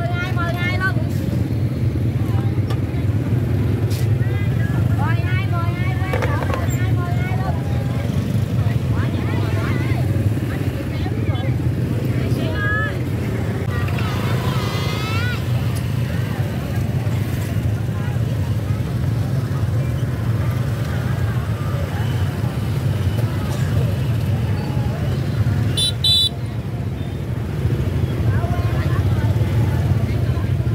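Busy outdoor market ambience: scattered voices of vendors and shoppers over the steady low hum of motorbike engines running nearby, with a short high beep a few seconds before the end.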